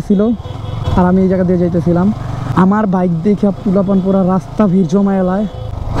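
A man talking, the loudest sound, over the low steady running of a sport motorcycle's engine at slow riding speed.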